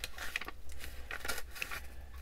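Pages of an old book being leafed through by hand: a quick run of short, dry paper rustles and flicks. The paper is brittle with age.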